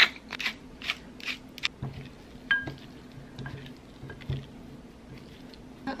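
Kitchen utensils handling chopped chicken in a glass food container: a quick run of sharp clicks and taps in the first second and a half, then softer handling sounds.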